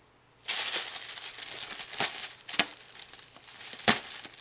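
Christmas tissue paper crinkling and rustling as a cat burrows its head into it. The noise starts suddenly about half a second in, with a few sharper crackles along the way.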